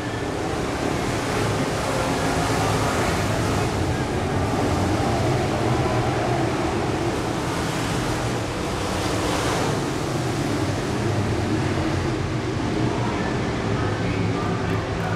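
V8 engines of several IMCA Modified race cars running at speed around a dirt oval, blending into a steady, continuous roar that swells slightly about nine seconds in.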